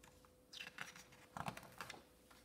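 A hand turning a page of a hardcover picture book: a quick run of short, crisp paper rustles and flicks, starting about half a second in.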